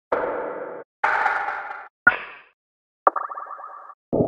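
Four short percussion one-shot samples auditioned one after another, each cut off by the next: two noisy hits, a sharp hit that fades quickly, then a ringing, pitched metallic-sounding hit near the end.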